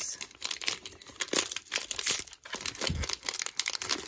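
A football card pack's shiny foil wrapper crinkling and tearing as hands pull it open, a run of irregular crackles.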